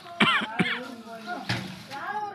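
Two short coughs about half a second apart, amid people talking.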